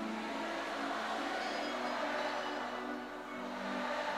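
Live concert music at a quiet point in the song: soft held keyboard or synth chords under a steady wash of crowd noise.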